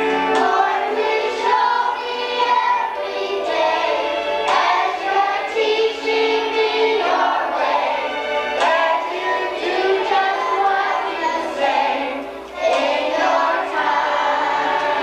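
Children's choir singing, with a brief break between phrases near the end.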